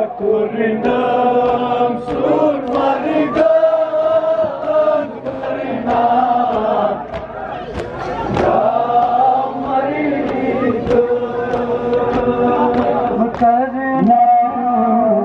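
Men chanting a Kashmiri noha (Shia lament) together, with rhythmic chest-beating (matam) slaps landing a little faster than once a second.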